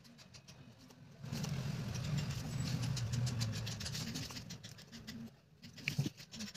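A vehicle engine rumble comes in about a second in, holds steady, and fades near the end. Light scratching of a craft knife cutting paper can be heard before and after it.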